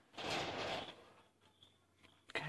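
One breathy rush of air from a smoker drawing on a cigarette fitted with a disposable filter holder, lasting under a second near the start.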